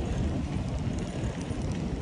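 Wind buffeting the microphone of a bicycle-mounted camera while riding, a steady low rumble that rises and falls.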